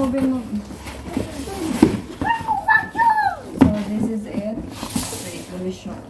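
Mostly voices of a woman and children, with a couple of sharp knocks from a large cardboard box being moved about.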